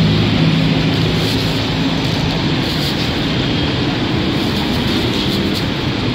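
Loud, steady road traffic noise, with a vehicle engine's low drone most prominent in the first couple of seconds.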